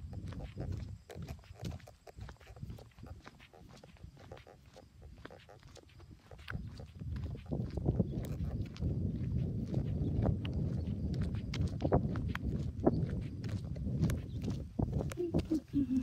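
Footsteps on asphalt with rustling handling noise from a carried phone, a plush toy brushing close to the microphone; the low rustling grows much louder about six seconds in.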